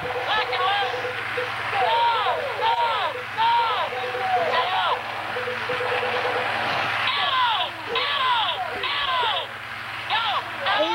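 Electronic toy sound effects: a rapid string of laser-style shooting sounds, each a quick rise and fall in pitch, mixed with bursts of high beeping and a pulsing electronic tone that stops about halfway through.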